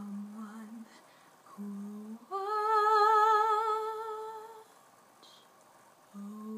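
A woman's unaccompanied singing voice: two short low notes, then a leap up to a long held note with vibrato, the loudest part, which fades out about a second before the end.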